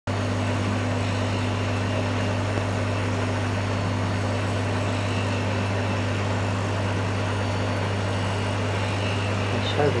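Steady low electrical hum with a constant hiss over it, from running aquarium equipment. A voice begins right at the end.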